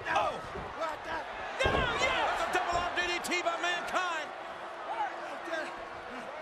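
A wrestler's body slams onto the wrestling ring canvas with one heavy thud about one and a half seconds in. Loud shouting voices from the arena crowd follow for a couple of seconds, then die down.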